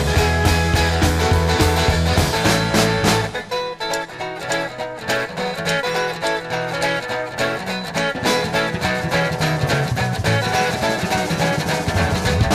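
Instrumental break of a folk-rock song: a full band with guitar and a steady beat. About three and a half seconds in the bass drops away, leaving a lighter passage of plucked guitar notes over the beat.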